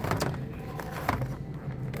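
Plastic blister packs on cardboard cards crackling and clicking as they are handled and shuffled: a short cluster of sharp crackles at the start and another about a second in, over a low steady background hum.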